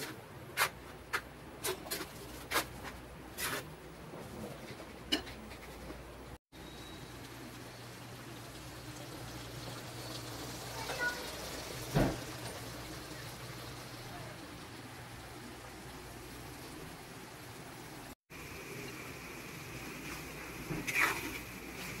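A spatula stirring a pork menudo stew in a frying pan, with a series of scrapes and taps against the pan over the first few seconds. The sauce then simmers with a steady soft bubbling hiss, broken by a single knock about midway.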